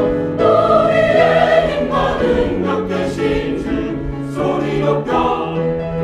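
Mixed choir of men's and women's voices singing a Korean-language anthem in full voice, with held chords; a short breath just after the start, then a loud new phrase.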